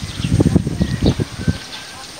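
Irregular low rumbling noise on the microphone that dies away about one and a half seconds in, with faint, short bird chirps throughout.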